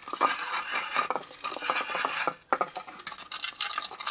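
A clear plastic bottle being cut into a thin strip on a Swiss Army knife blade set in a plastic bottle-cutter holder: the plastic crackles and scrapes as it is pulled through, with a short break about two and a half seconds in.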